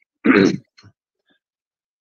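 A short burst of laughter, one quick laugh with a faint second breath right after it, then silence.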